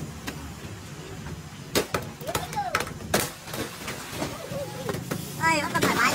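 A heavy truck idles with a steady low hum, with a few sharp knocks as the tarp and its ropes are pulled loose. Near the end a man cries out as the stacked cartons begin tumbling off the trailer.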